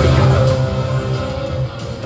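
Heavy rock trailer music with electric guitar, coming in suddenly and loud after a brief silence and holding a sustained chord over a heavy low beat.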